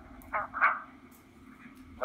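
Handheld digital scanner's speaker in a gap between radio transmissions: a steady low hum and hiss, broken about half a second in by a brief garbled burst.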